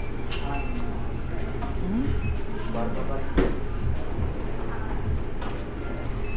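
Cafe room noise: a steady low rumble under voices and background music, with one sharp knock about three and a half seconds in.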